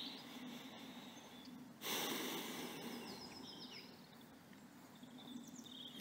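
Faint background ambience with small birds chirping now and then. About two seconds in, a sudden soft rush of noise starts and fades away over a second or two.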